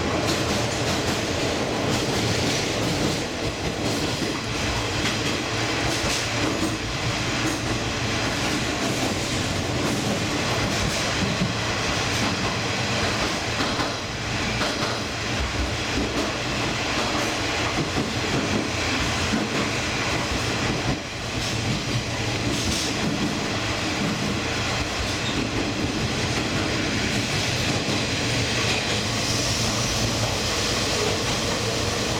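A diesel train running along the track: a steady rumble of wheels on rails with scattered short clicks.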